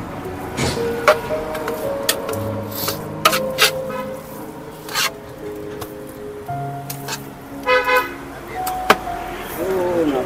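Roadside street sound: held musical notes that step from one pitch to another in the background, a vehicle horn beep about eight seconds in, and several sharp clinks of steel serving vessels.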